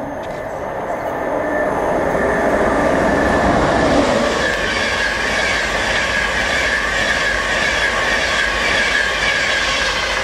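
Virgin Trains East Coast InterCity 225 electric train (Class 91 locomotive with Mark 4 coaches) passing through the station at speed: rushing wheel-and-rail noise that builds over the first few seconds and then holds, with a steady high-pitched ring from the wheels.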